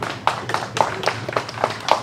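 A few people clapping sparsely: sharp, uneven claps, about four or five a second.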